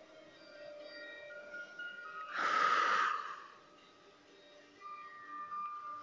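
Faint background music with soft held tones, and a little over two seconds in one loud breath, about a second long: the instructor breathing out during the exercise.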